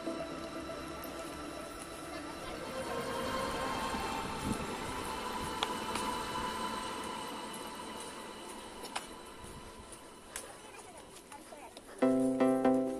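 Indistinct chatter of people nearby over outdoor background noise, with a few faint clicks. Background music fades out at the start.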